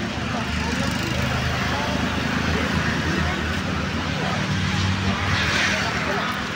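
Indistinct voices of people close by over a steady low rumble.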